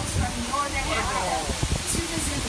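A guide speaking over a steady rushing background noise, with a couple of low bumps about one and a half seconds in.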